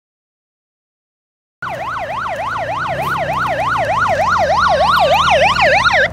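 Police siren in a fast yelp, wailing up and down about three times a second over a low rumble. It starts suddenly a little over a second and a half in, grows steadily louder and cuts off abruptly at the end.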